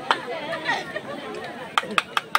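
Crowd chatter and overlapping voices outdoors, broken by sharp short knocks: one just after the start and two close together near the end.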